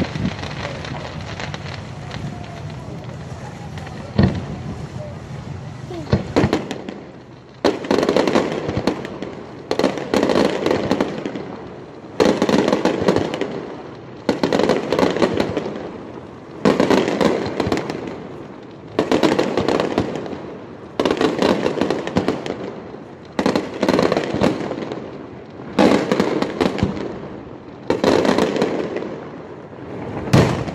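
Aerial firework shells bursting. For the first seven seconds there are scattered bangs over a continuous rumble; after that comes a steady series of ten loud bursts, one about every two seconds, each a sharp bang with a tail that fades away.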